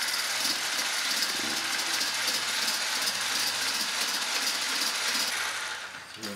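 Corded electric hand blender with a whisk attachment running steadily in a metal bowl, beating egg whites toward stiff peaks; the motor cuts off near the end.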